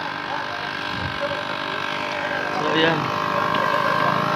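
Passing road traffic: a motor vehicle's engine hums steadily and grows louder near the end as it comes closer.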